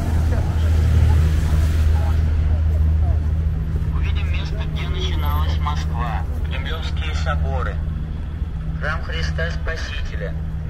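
City street traffic: a steady low engine rumble from the road, with the hiss of a passing car fading out about two seconds in. Passers-by talk close to the microphone in the second half.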